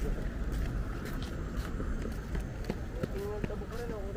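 Outdoor roadside ambience: footsteps on pavement, with wind rumbling low on the microphone and people talking faintly in the background from about three seconds in.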